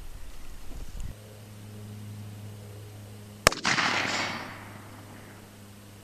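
A single shot from a Smith & Wesson 686 .357 Magnum revolver about three and a half seconds in: a sharp crack followed by about a second of echo dying away. A steady low hum runs beneath it from about a second in.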